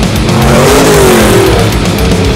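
UTV engine revving, its pitch rising and then falling in the middle, over loud heavy-metal music.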